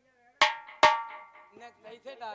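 Two sharp percussion strikes about half a second apart, each leaving a brief bell-like ring.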